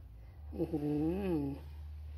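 A man's drawn-out vocal 'ooh', rising and then falling in pitch, lasting about a second, over a steady low hum.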